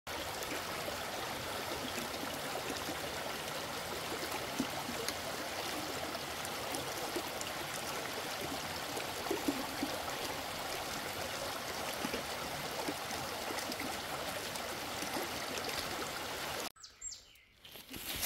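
A shallow mountain stream running over rocks, a steady, even rush of water. It cuts off suddenly about a second before the end.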